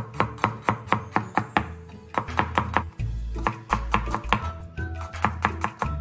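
Chinese cleaver chopping peeled garlic cloves on a plastic cutting board: quick, evenly spaced chops that run on steadily, with background music.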